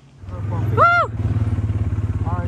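A four-wheel-drive off-road vehicle's engine running with a fast, even throb, coming in just after the start. About a second in, a person gives a short voiced call that rises and then falls in pitch.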